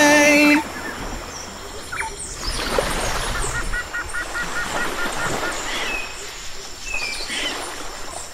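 A held music note ends about half a second in, then birds call over a steady noisy background, with a quick run of repeated chirping notes in the middle.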